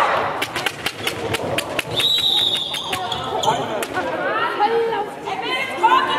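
Handball bouncing and slapping on a sports hall floor in quick knocks, then one referee's whistle blast about two seconds in, lasting about a second. Players' voices echo in the hall throughout.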